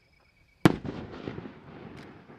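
A 5-inch aerial firework shell bursting: one sharp, loud report about two-thirds of a second in, followed by a rumbling echo that dies away.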